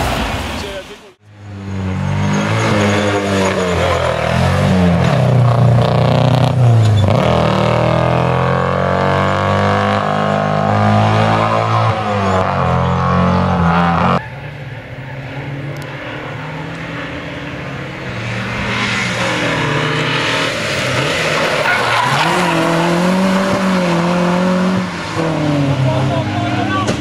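Race car engines revving hard and changing pitch as the cars accelerate past through the gears, heard one car after another. The sound changes abruptly at about a second in and again about halfway through.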